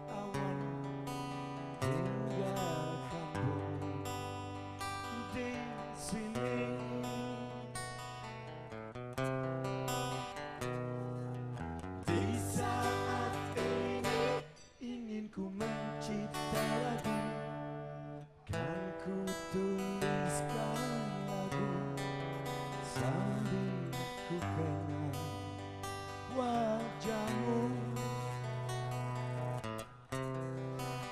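Live rock band playing a slow instrumental passage: a strummed acoustic guitar over long, steady bass notes, with a melody line that bends in pitch. The music drops away briefly twice around the middle.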